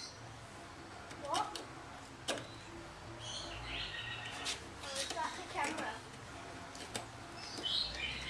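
Adjustable wrench working a screw extractor in a snapped, rust-seized hinge stud, giving a few sharp metal clicks as it is turned. Birds chirp in the background.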